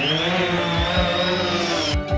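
DJI Phantom 3 Standard quadcopter's four brushless motors and propellers spinning up for take-off. The whine rises, then holds steady, and cuts off abruptly near the end. Background music with a beat runs underneath.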